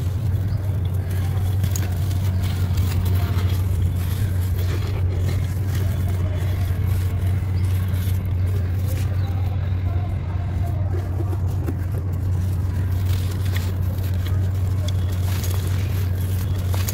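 Lumps of dry sandy clay being crumbled and rubbed between the fingers, grains and dust falling into a bowl with faint scattered ticks. Under it runs a steady low hum, which is the loudest sound.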